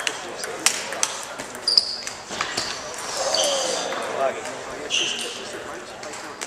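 Table tennis ball clicking off bats and the table in quick, uneven strikes during a rally, with brief high squeaks of shoes on the polished hall floor. The rally's clicks thin out after about two and a half seconds, and voices carry in the echoing hall.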